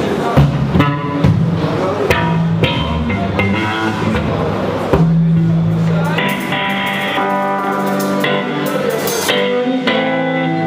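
Rock band playing live: electric guitars and a drum kit, with drum hits early and held chords from about five seconds in.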